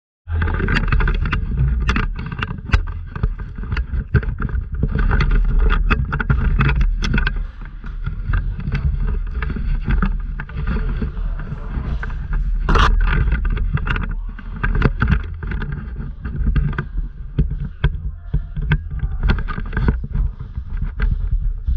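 Rumble and rustle of a body-worn action camera being jostled as the wearer moves, with scattered irregular sharp clicks and knocks, the sharpest about 13 seconds in.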